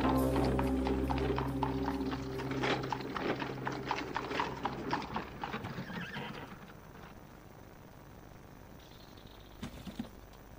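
Horse's hooves clip-clopping on a paved path as it pulls a carriage, the steps growing fainter as it moves away and dying out about two-thirds of the way in. Background music fades out during the first seconds.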